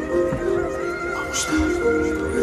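Live band music played from a concert stage: sustained chords with a long held high note above them, and a deep thump about one and a half seconds in.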